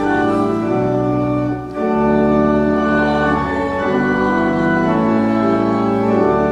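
Church organ playing a hymn in sustained chords that change every second or so, with a brief break between phrases a little under two seconds in.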